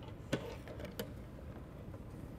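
A lidded box being handled, giving two light knocks about two-thirds of a second apart.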